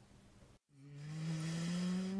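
A man's long drawn-out vocal hum that swells from quiet and slowly rises in pitch, a hesitation sound leading into speech. It follows a brief silence.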